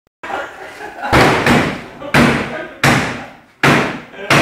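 Hammer blows on the sheet-metal body of a stripped VW Saveiro pickup: five loud strikes, about two-thirds of a second apart, each ringing briefly before the next.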